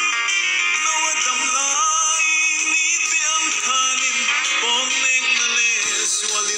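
A man singing a Mizo gospel song into a microphone over musical accompaniment.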